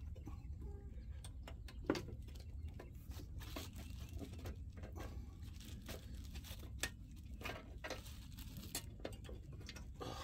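Faint scattered clicks, taps and rustles of hands working a stainless surf tab's quick-disconnect pin loose at its bracket, over a low steady rumble.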